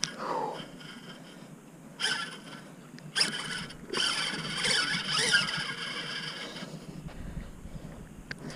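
Round baitcasting reel being cranked against a heavy fish, its gears and line giving a scratchy, zipper-like noise in uneven bursts.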